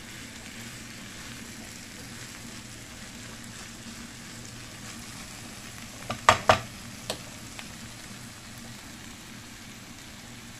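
Bacon, button mushrooms and onion sizzling steadily in a nonstick frying pan as they are stirred with a spatula. A little past halfway come a few sharp knocks in quick succession, two of them loud, as the spatula hits the pan.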